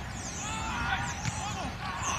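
Faint, distant shouting and calling from rugby players on the pitch, words not clear, over a steady low rumble.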